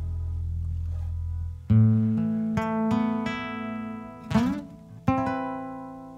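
A low sustained double-bass note cuts off about a second and a half in. An acoustic guitar then strums a few closing chords, with a short sliding sound just before the last chord, which rings out and fades as the song ends.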